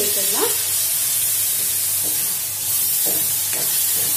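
Chopped vegetables sizzling in hot oil in a metal kadai, stirred with a long metal ladle that scrapes the pan a few times in the second half.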